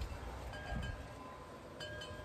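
Metal-tube wind chime ringing: struck about half a second in and again near the end, each strike leaving several clear notes ringing on.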